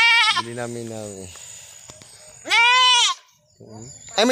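A young goat bleating twice: a short high bleat right at the start, then a longer one about two and a half seconds in that rises and falls in pitch.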